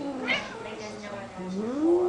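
A domestic cat giving long, drawn-out meows: one call tails off just after the start, a short higher chirp follows, and a new call rises in pitch about a second and a half in and holds.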